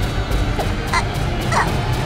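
Background score with a fast, even ticking beat of about five strokes a second. A few short, high yelp-like calls sound over it about one second and again about one and a half seconds in.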